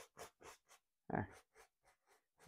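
Faint, quick strokes of a small fan brush dragging oil paint across canvas, about four scratchy strokes a second, fading out in the first half. A brief voice sound comes about a second in.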